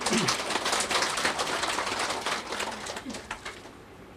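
Audience laughing and clapping after a joke, the dense patter of claps fading away over about three and a half seconds.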